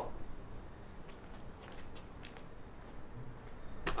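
Quiet outdoor ambience: a faint low hum with a few soft, scattered ticks and taps.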